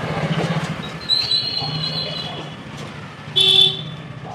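Vehicle horns sounding in the street: a steady high horn note lasting about a second, starting about a second in, then a short, loud honk near the end, over a low steady engine hum.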